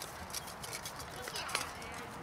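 A horse walking close by on grass, its hooves giving irregular muffled clops, with indistinct voices in the background. The sharpest click comes about one and a half seconds in.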